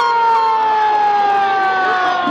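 A siren's long held tone, sliding slowly and steadily down in pitch as it winds down after the touchdown.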